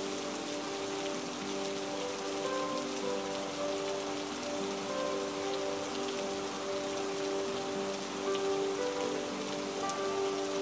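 Steady rain falling, with scattered faint drop ticks. Under it runs soft, slow music of long held notes.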